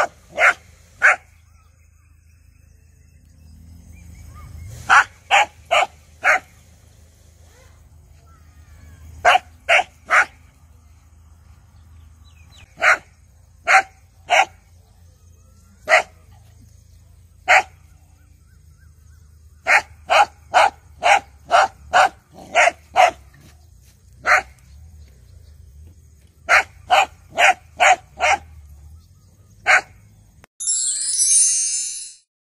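A dog barking at a turtle, short sharp barks in clusters of up to seven with pauses between, some two dozen barks in all.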